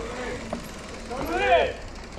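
Indistinct voices talking, with a short talking burst near the end, over a steady low rumble.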